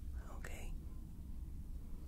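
Steady low engine hum of the Enterprise-D ambience track, with a brief soft whisper-like breath sound about half a second in.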